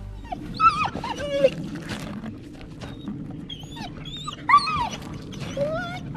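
A husky dog whining: a string of high, wavering whines that slide up and down in pitch, in short bursts with gaps between them.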